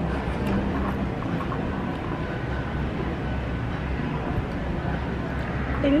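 Steady low rumble of outdoor background noise, with no clear single event.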